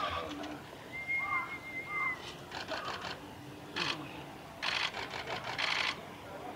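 Small birds calling with short chirps and a thin steady whistle, then, from about halfway through, several bursts of rapid clicking rasps, which are the loudest sounds.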